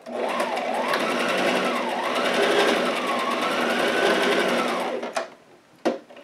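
Domestic sewing machine stitching a short zigzag seam with backstitching to reinforce a pocket edge, its motor speeding up and slowing down several times. It stops about five seconds in, followed by a couple of short clicks.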